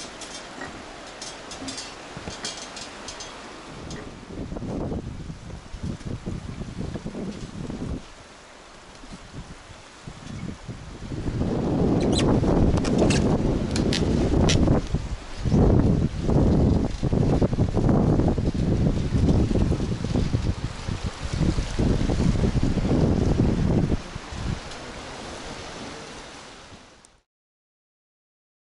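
Fast mountain river rushing, with wind buffeting the microphone, much louder from about ten seconds in until near the end, when it drops and the sound stops.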